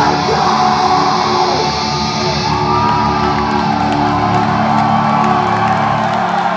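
A metal band playing live at full volume through a concert hall's PA, with distorted guitar chords held steady, recorded from within the crowd. Fans yell and whoop over it.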